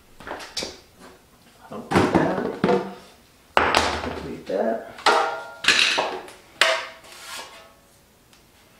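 Handling clatter: a plastic bucket lid being pried and worked loose with a metal tool, then a metal mud pan picked up. About a dozen separate knocks, scrapes and clatters, some with a brief metallic ring.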